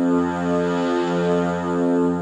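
Electronic keyboard playing a sustained low, dark chord over a steady bass drone, the chord shifting about once a second.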